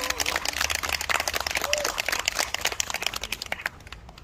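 An audience applauding, the clapping thinning out and dying away near the end.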